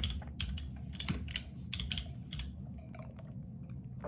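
A quick run of light clicks and taps, several a second, thinning out in the second half.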